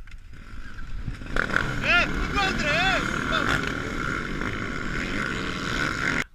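Motocross bike engines running and revving close by, getting loud about a second in, with a steady whine over the engine noise and a few short rising-and-falling blips.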